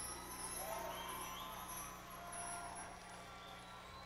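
Live concert sound dying away: the band's last notes fade, with a few voices from the audience, over a steady low hum.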